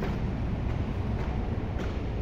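Steady low background rumble, with faint footsteps on a concrete floor about every half second in the second half.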